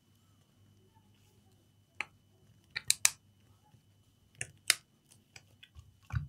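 Handling a laptop battery pack: a few short, sharp plastic clicks as its peeled-back wrapper is pressed back down by hand, one about two seconds in, three close together around three seconds and two more a little later.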